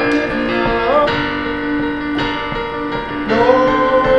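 Roland FP-4 digital piano played, with a man singing over it; a sung note scoops up about a second in and a long note is held from about three seconds in.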